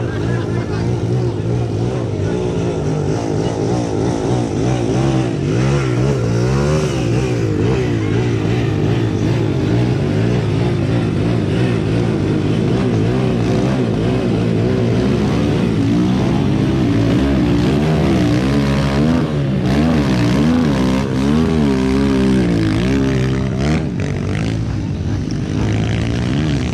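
Dirt bike engines revving up and down over and over, their pitch rising and falling, as the bikes are worked through deep mud.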